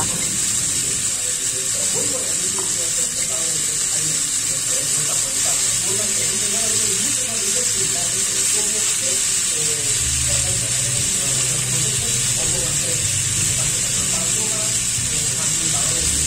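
Diced pork and tomato slices frying on low heat in an oiled, buttered pan: a steady high sizzle, with faint music underneath.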